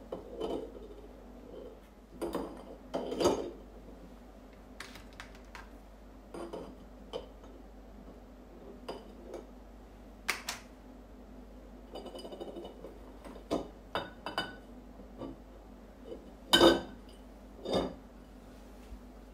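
Raw eggs being set one by one into a glass jar: scattered light clinks and taps of eggshell against glass, with the two loudest knocks near the end.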